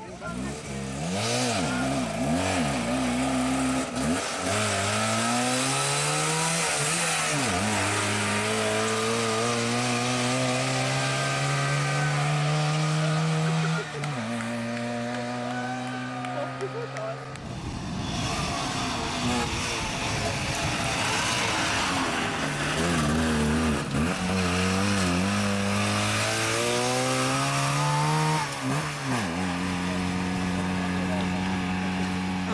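Trabant P60 rally car's two-stroke twin-cylinder engine revving hard through the gears, its pitch climbing and then dropping at each shift. In the middle the engine note gives way to a few seconds of rushing noise before another run of climbing revs.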